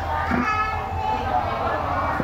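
Several people talking at once, children's voices among them, over a low steady hum.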